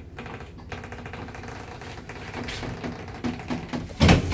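Clicking and rattling from an unmodernised Zremb passenger lift's car and door mechanism. Near the end there is a quick run of ticks, about four a second, and then a loud knock.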